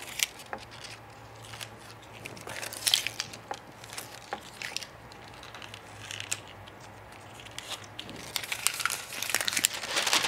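Plastic DTF transfer film crinkling and crackling in scattered bursts as it is handled on a freshly pressed shirt, louder about three seconds in and again near the end, over a faint steady low hum.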